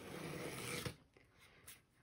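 Craft knife blade slicing through a book cover's cloth along the edge of its cardboard board: a faint scratchy cutting sound for about the first second, then quiet with one small click near the end.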